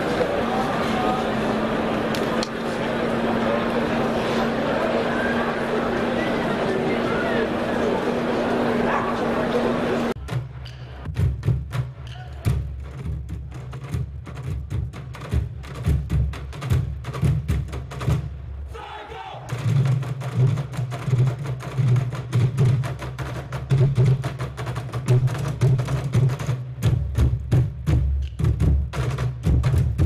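Crowd chatter for about the first ten seconds, then a troupe of drummers beating large blue plastic water jugs with drumsticks. They play a fast rhythm of deep thuds, with a short break about halfway through.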